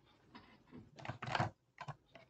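Irregular clicks and taps, typical of someone typing on a computer keyboard, with the loudest cluster a little past the middle.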